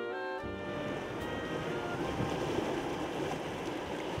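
Music ends in the first half-second, and a few faint notes fade away. The steady wash of sea waves breaking over shore rocks follows.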